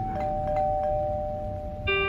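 Electronic doorbell chime ringing a two-note ding-dong, a higher note then a lower one, held for almost two seconds. Background music comes back in near the end.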